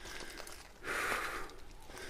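A man's single heavy breath out, a short, sigh-like rush of air about a second in.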